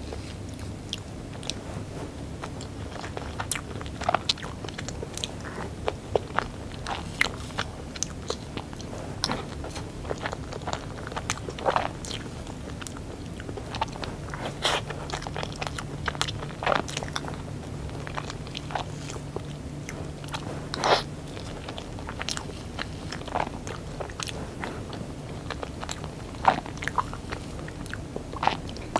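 Close-miked eating of soft chocolate cake: chewing and mouth sounds with scattered short clicks and taps, some from a metal fork against the plastic cake tray.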